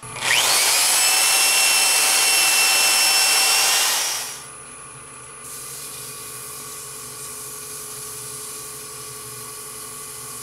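Handheld rotary power sander spinning up with a sharply rising whine, then sanding a spinning epoxy-resin hollow form on the lathe with a steady whine. It stops a little over four seconds in, leaving the lathe's quieter steady hum as sanding paste is worked onto the turning piece by hand.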